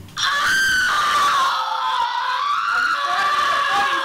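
A person screaming: one long, loud, high-pitched scream that wavers slightly in pitch.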